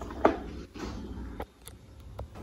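Light knocks and clicks from an old table fan's wire guard and plastic base being handled and set down: one knock about a quarter second in and two sharp clicks around a second and a half. The fan is not yet running.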